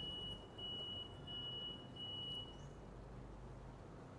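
Faint electronic beeping: a single high steady tone repeated four times, each beep a little over half a second long with short gaps, stopping about two and a half seconds in.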